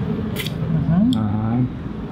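A short, sharp noise about half a second in, then a man saying a drawn-out "uh-huh".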